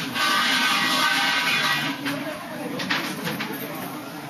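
Water thrown onto the sacred fire's embers, hissing and sizzling loudly for about two seconds as the fire is quenched, then dying down, with a few small clicks near the end.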